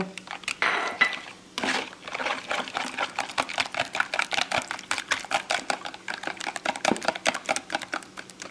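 Metal wire whisk beating eggs in a plastic bowl, its wires clicking against the bowl in a rapid, steady rhythm from about two seconds in.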